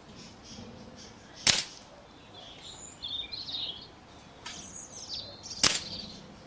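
Two sharp cracks about four seconds apart: air rifle pellets fired into a tin can packed with ice.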